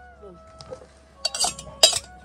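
Metal drinking vessels clinking, two sharp ringing clinks in the last second, the second one louder.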